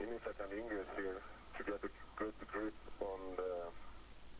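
Speech over a narrow-band radio link: one voice talking in short phrases with brief pauses, thin and with no low end.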